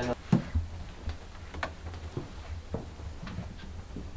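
Footsteps on old wooden floorboards, short knocks about two a second at a walking pace, over a low rumble.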